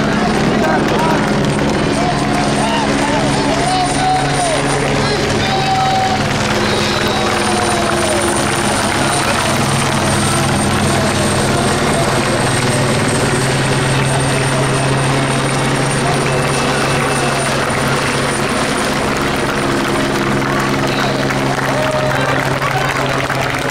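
A helicopter's steady engine and rotor noise, with voices underneath.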